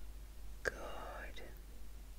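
A woman's short breathy whisper close to the microphone, lasting under a second, opening with a sharp mouth click about half a second in.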